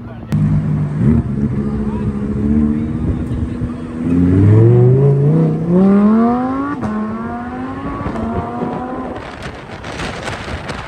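Sports car engine accelerating hard: after a few seconds of steady running the engine note climbs steadily in pitch, with a gear change near seven seconds in, after which it keeps climbing.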